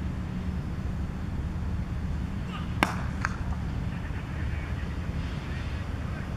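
Cricket bat striking the ball: one sharp crack about three seconds in, followed by a smaller click, over a steady low background rumble.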